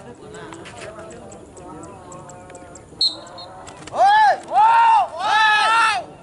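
People shouting at a racing pigeon to call it down to the landing arena: three loud, long calls that rise and fall in pitch, starting about four seconds in, over faint crowd chatter. A brief high-pitched tone sounds about three seconds in.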